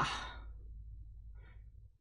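A man's sigh, the breath trailing off over the first half second, then a faint breath about a second and a half in, over a low steady hum.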